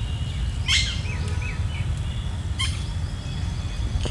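Birds calling: two sharp, harsh calls about two seconds apart, with a few short chirps between them, over a steady low rumble.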